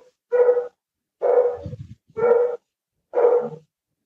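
A dog barking over and over, four steady-pitched barks about a second apart.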